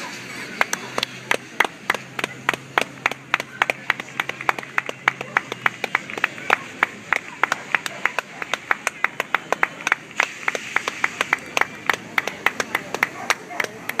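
Hand clapping: quick, sharp, separate claps at about four or five a second, starting about half a second in and stopping just before the end.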